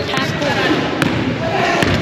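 A basketball bouncing on a gym floor, a few sharp thuds about a second apart, over the chatter of many people in the room.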